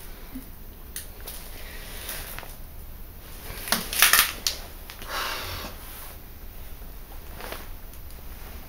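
Broken LCD glass and debris crunching and clicking on a hard floor: a short burst of sharp clicks and crunching about four seconds in, then a briefer scrape about a second later.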